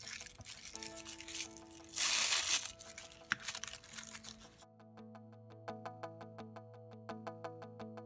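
Thin HDPE grocery-bag plastic crinkling and rustling as it is handled, loudest about two seconds in. Background music comes in under it. A little past halfway the rustling cuts off suddenly and only the music remains: a few held notes over an even clicking beat.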